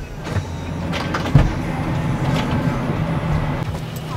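Car cabin noise: a steady low hum from the vehicle, with a few light knocks and a louder thump about a second and a half in.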